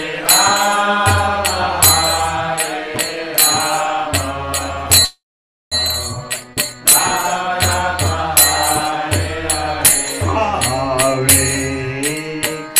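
A man chanting a mantra in long, melodic phrases into a microphone, over a steady beat of sharp strokes from small hand cymbals. The sound cuts out completely for about half a second near the middle.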